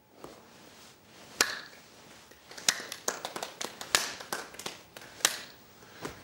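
A series of sharp, irregular taps or clicks over quiet room tone, a dozen or so, coming closer together in the middle.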